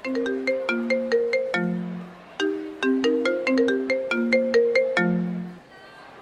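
Smartphone ringtone for an incoming call: a bright melody of quick, separate notes played twice, stopping about half a second before the end.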